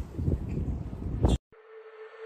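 Outdoor background noise with wind rumbling on the microphone, ending in a click and an abrupt cut about a second and a half in. A faint steady tone follows.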